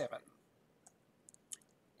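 The last syllable of a spoken word, then a near-silent pause in the room tone broken by a few faint, short clicks about a second to a second and a half in.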